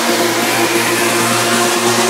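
Electronic trance track: a gritty, buzzing synth bass held under a fast, evenly pulsing synth pattern, with no kick drum and a faint rising sweep.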